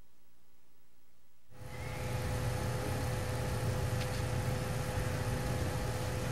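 A steady hum with hiss and a constant tone starts abruptly about a second and a half in, after faint hiss.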